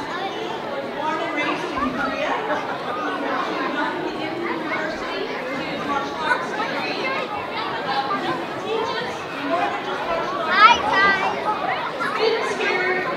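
Indistinct chatter of many people talking at once in an audience, with no single clear speaker; one louder voice rises in pitch about ten and a half seconds in.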